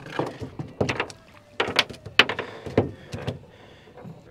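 Close-up handling noise from hands working right at the camera, a series of irregular clicks, knocks and rubs, with the loudest knocks a little past the middle.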